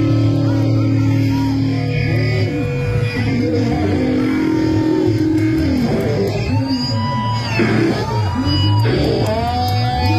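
Rock band playing live, with an electric guitar lead to the fore over bass and drums; in the second half the guitar notes are bent up and down.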